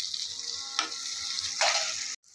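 Spice masala with freshly added grated tomato sizzling in hot mustard oil in a frying pan. The sizzle is steady, with short louder spurts about a second in and again near the end.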